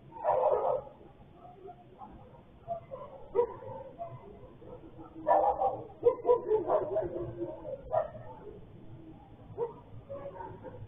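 Dogs barking and yelping, picked up by a security camera's microphone: one burst near the start, then a run of barks from about five to eight seconds in.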